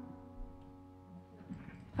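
The band's final chord, with acoustic guitar, ringing out and fading away.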